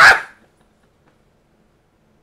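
A small dog barks once, sharply, at the very start, after which it is almost silent.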